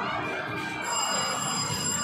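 A steady, high electronic ringing starts about a second in and holds, over a busy background of voices and noise.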